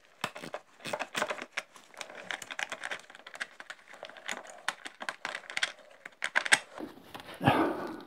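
Irregular small clicks, scrapes and rattles of gloved hands working a moped's seat latch under the plastic rear bodywork to free the seat.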